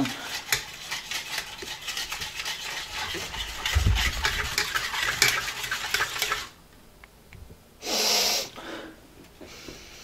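A spoon stirring hot cocoa in a steel saucepan, with quick clinks and scrapes against the metal, for about six seconds before it stops. A short rushing noise follows about eight seconds in.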